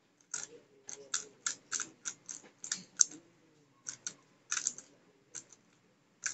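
MF3RS stickerless 3x3 speedcube being turned fast during a solve: quick runs of sharp plastic clicks as the layers snap round, with a brief pause a little past three seconds in.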